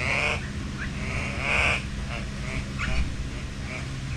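Birds calling in an aviary: three short pitched calls, the middle one the longest, over a steady low hum.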